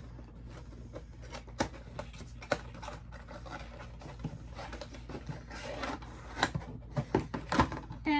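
A Funko Pop vinyl figure being taken out of its cardboard box by hand: scattered clicks and taps, with soft rustling that gets busier near the end.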